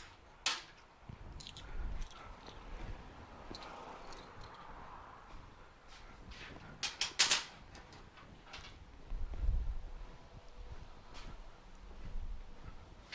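Workshop handling noises as small parts and tools are picked up and set down: scattered light clicks, two sharp clicks about seven seconds in, and a dull thump a couple of seconds later.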